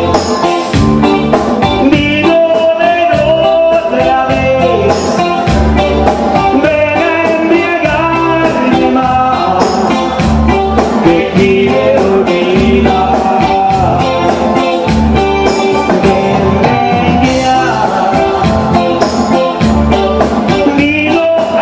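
Live grupero band playing: electric guitar, keyboards and drums, with a man singing into a microphone.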